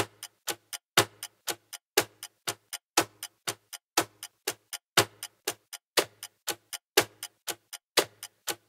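Metronome click track ticking steadily at about four clicks a second, with every fourth click accented and lower.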